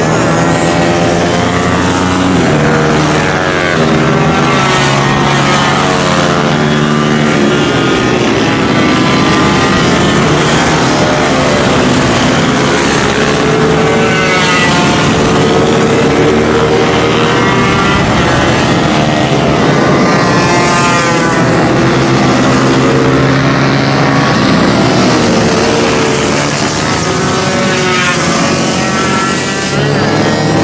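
Racing mini-bike engines revving hard as the bikes run through the corners, several at once. Their notes climb and drop again and again with throttle and gear changes as bikes pass close by and farther off.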